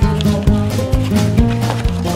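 Background music with a steady bass line and a regular beat.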